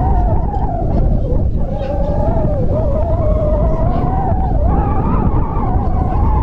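Wind buffeting the microphone, a heavy low rumble, with a steady whine whose pitch wavers slightly running throughout.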